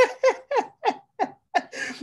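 A man laughing heartily: a quick run of short "ha" bursts, about four a second, that tail off.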